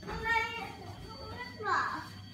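A young child's voice: a word spoken at the start and a short high-pitched call near the end.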